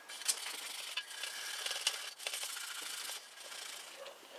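A ball of crumpled aluminium foil is scrubbed back and forth along a chrome bicycle mudguard, making a scratchy rubbing as it polishes rust spots off the chrome. The rubbing stops about three seconds in.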